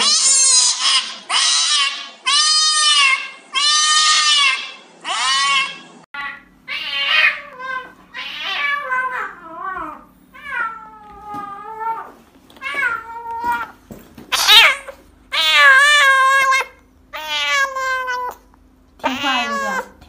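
Cats meowing and yowling loudly: distress calls from cats being restrained for an injection. A string of long, drawn-out yowls about a second apart gives way, about six seconds in, to a different cat's shorter, rising-and-falling meows.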